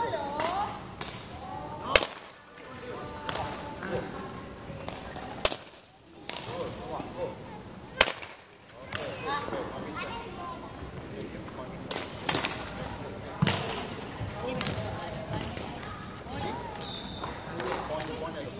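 Sharp cracks of badminton rackets striking, about five loud ones a few seconds apart among many fainter hits, in a large sports hall. Children's voices are faint in between.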